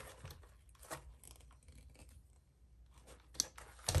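Faint scraping and small clicks of a hand driver turning the lower pivot ball in the front suspension arm of a 1/16 Traxxas Mini E-Revo, adjusting the wheel's camber. Near the end come a couple of sharper knocks as the plastic truck is set back down on the bench.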